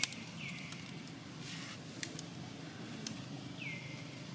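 Three short, high calls, each sliding down in pitch and levelling off: two close together at the start and one near the end, with a few faint sharp clicks between them over a steady outdoor hum.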